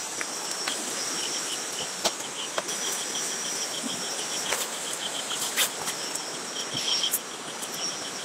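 Night insects, crickets among them, calling: a steady high trill and, lower down, a regular chirping of about four pulses a second, over a constant hiss. A few brief sharp clicks break in now and then.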